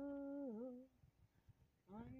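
A woman's unaccompanied singing voice holds a long note, which wavers down and dies away under a second in. After a short silence, a new sung note begins near the end.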